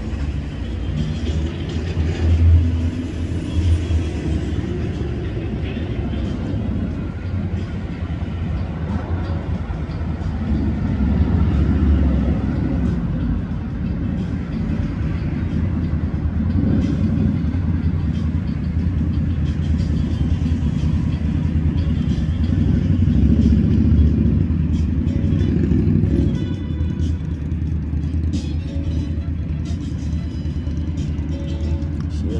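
Road traffic: a steady low rumble of passing vehicles that swells several times as cars go by.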